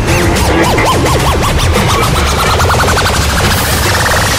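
Psytrance electronic music: a steady bass beat under synth notes that repeatedly swoop up and down in pitch. About halfway through, a rapidly repeating note starts climbing in pitch, building up toward the next section.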